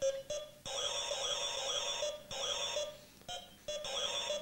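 Electronic wire-maze skill game sounding: short beeps, then a longer warbling electronic tone about a second in and a shorter one just after two seconds, then short beeps again near the end.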